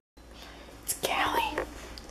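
A person whispering briefly, with a soft click just before.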